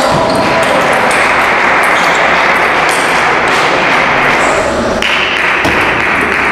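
Table tennis ball being struck back and forth with rackets and bouncing on the table in a rally, a series of short sharp ticks over steady hall chatter.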